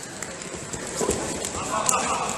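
Wrestlers' feet shuffling and stamping on a foam wrestling mat, with sharp slaps from hand-fighting, the loudest just before the end, under indistinct shouting voices.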